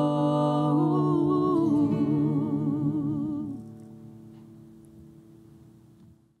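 Male and female voices in close harmony hold the song's final sung chord, some of them with vibrato. The chord ends about three and a half seconds in, and a faint ringing tone then dies away.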